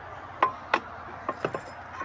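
Metal locking pin being pulled from the bracket of an RV's folding entry handrail: about five short metallic clicks and clinks, the sharpest near the start.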